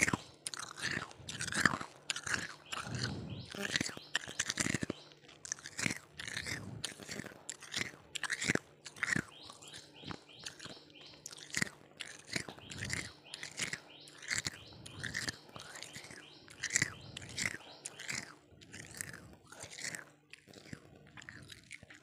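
A person chewing ice and freezer frost: a continuous run of crisp crunches, about one or two bites a second.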